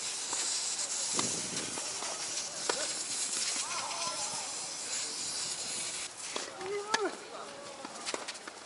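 Tennis ball struck by rackets in a doubles rally on a hard court: a few sharp, separate hits spaced a second or more apart, the clearest about a second in, near three seconds and near seven seconds. Players give short shouts near the middle and again near the end, over a steady hiss.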